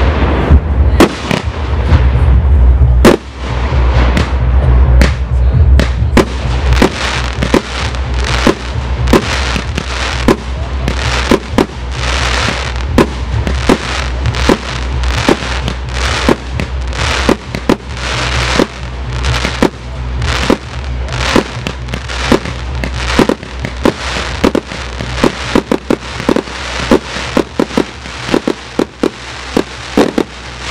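Aerial fireworks display: shells bursting one after another in quick succession, two or three sharp reports a second, with crackle between them.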